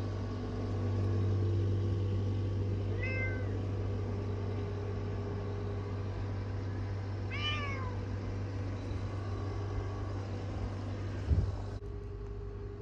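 A domestic cat meows twice, briefly about three seconds in and again about seven seconds in, the second meow rising and falling in pitch. A steady low hum runs underneath, and a single thump comes near the end.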